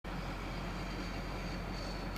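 Steady low drone of engine and road noise inside a moving truck's cab, with a faint thin high whine.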